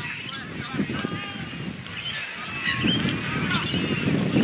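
Scattered shouts and calls from players and people on the sideline across an open field, with wind buffeting the microphone.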